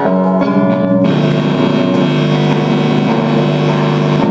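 Electric guitars played through an amplifier: a couple of quick chord changes, then a chord left ringing from about a second in.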